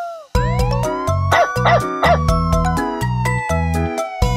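After a brief gap just after the start, upbeat children's-song music with a steady beat and bass line comes in. Over it runs a cartoon police-siren sound effect that glides up once and then slowly falls.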